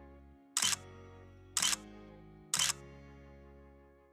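Three camera-shutter click sound effects about a second apart, each set on a held music chord that rings on underneath. The clicks are the loudest sounds, and the chords fade away near the end.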